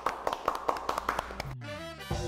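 A few people clapping over an edited-in music cue, the claps coming thick and fast for about the first one and a half seconds. Near the end the music slides down in pitch.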